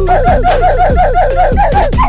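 A rapid run of short laugh-like vocal sounds, each dropping in pitch, about six a second, over a steady low bass line from a music track.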